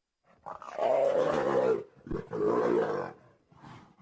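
A big cat roaring twice, each rough roar lasting about a second, followed by a few short, quieter grunts near the end.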